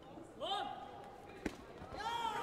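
A loud shout that rises and holds its pitch, then about a second later a single sharp thud as a taekwondo sparring exchange brings one fighter down onto the foam mat.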